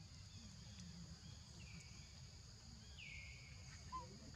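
Faint outdoor ambience: insects droning steadily at a high pitch, with two short whistled calls that dip in pitch and then hold, the second louder, about one and a half and three seconds in.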